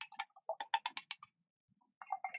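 A quick run of about ten light clicks in under a second, with a couple of single clicks just before it. The clicks come from small hard objects being handled on a craft table.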